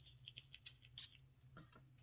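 Several short spritzes from a glass perfume bottle's spray pump, one after another within about a second.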